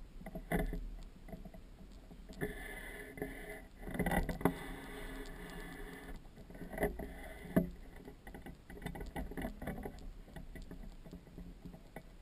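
Handling noise from a GoPro Hero 2 mounted on the end of a 16-foot extension pole as the pole is raised and swung: scattered knocks and rubbing, with a longer stretch of rubbing a couple of seconds in and sharp knocks around four seconds and again near seven and a half seconds.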